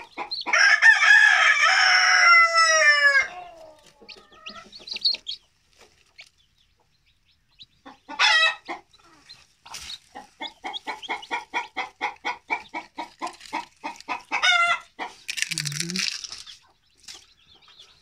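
A rooster crows once near the start, long and loud, falling in pitch at the end. Later a broody hen clucks in a steady run of about four clucks a second, with a short call before and after the run.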